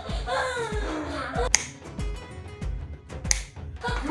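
Background music with a steady beat of about two thumps a second, with two sharp snaps about one and a half and three and a quarter seconds in.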